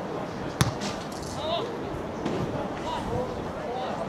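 Distant voices of players and onlookers calling and talking across an open field, with one sharp thud about half a second in.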